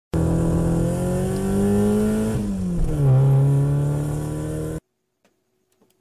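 Car engine sound effect accelerating: the engine note climbs slowly, drops suddenly about two and a half seconds in as if shifting gear, then holds at a lower pitch and cuts off just before five seconds, leaving near silence.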